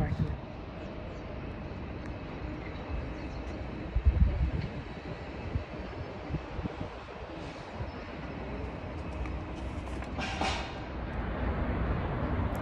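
Steady low rumble of outdoor background noise and wind on a phone microphone, with a single knock about four seconds in and a brief rustle near ten and a half seconds as the phone is moved.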